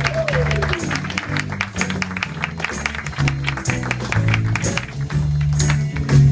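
Live band with electric bass guitar, piano and violin playing an upbeat song with a steady beat, the audience clapping along in time.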